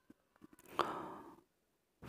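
A man's single short breath, about a second in, lasting about half a second.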